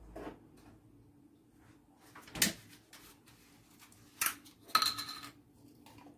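A few short, sharp knocks and clicks of a plastic milk bottle being picked up and handled on a kitchen counter, with quiet pauses between them.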